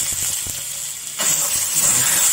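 Pork belly skin searing on a hot wok with a steady hissing sizzle. The sizzle gets louder just after a second in as another piece is pressed down.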